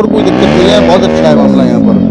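A man's voice in one long drawn-out utterance that rises and falls slowly in pitch, fading out near the end.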